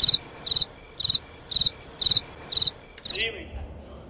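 Cricket-chirp sound effect: six short, identical high trills about half a second apart, the stock comic cue for an awkward silence. A brief voice sound follows near the end.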